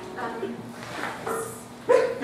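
A few short voice sounds from performers on stage, then a sudden loud burst of voices and laughter near the end.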